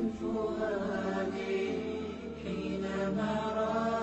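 Vocal chanting: a voice holding long, slowly bending melodic notes.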